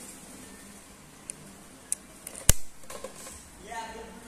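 A few short metallic clicks from a PCP air rifle's action being worked, with the loudest sharp snap about two and a half seconds in. This is typical of cocking the rifle and chambering the next pellet between shots.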